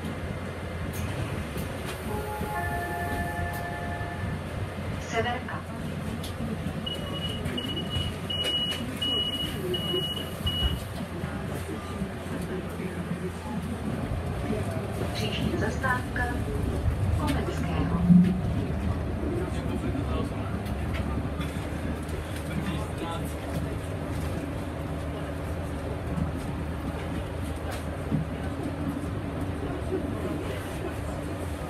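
Interior of a Solaris Urbino 15 III city bus on the move: a steady rumble of engine and road noise. A short electronic chime sounds a couple of seconds in, and a row of about five short high beeps follows around seven to ten seconds in.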